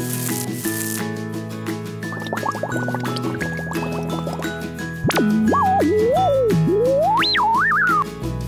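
Bouncy theme music for a children's science show. A few quick rising blips come in partway through. About five seconds in, a louder whistle-like tone swoops up, then slides up and down over the music.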